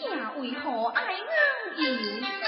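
A young performer's stylized Teochew opera declamation, the voice sliding widely up and down in pitch.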